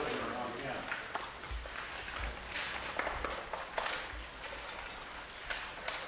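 The ensemble's last note dies away at the start. Then the hall settles into low room noise with scattered small knocks and rustles from players shifting and handling their instruments and music stands.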